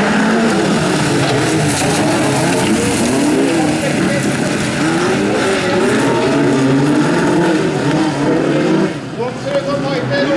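A pack of Volkswagen Beetle bilcross racers accelerates hard away from a standing start, several air-cooled flat-four engines revving over one another. Their pitch repeatedly climbs and drops as they run up through the revs and shift. The overall level dips briefly near the end.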